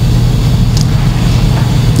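A steady, loud low hum with no speech.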